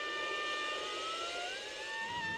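Solo drum-corps soprano bugle sustaining a high note, then sliding smoothly upward about a fifth in the second half.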